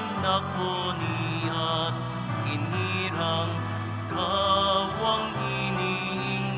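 Opening hymn of a Catholic Mass: a voice singing over instrumental accompaniment, with held bass notes that change every second or so.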